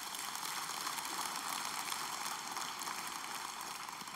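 Audience applauding: a steady, even wash of clapping.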